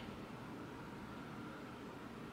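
Faint steady background hiss of room tone, with no distinct sound.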